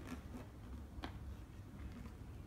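Quiet handling of a cardboard LEGO box, with a single sharp click about a second in over low room rumble.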